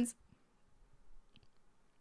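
The tail of a spoken word, then near silence broken by a few faint, short clicks about a second in.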